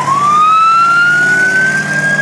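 A siren winding up: its pitch climbs quickly, then keeps rising slowly and levels off at a high steady wail. A vehicle engine hums steadily underneath.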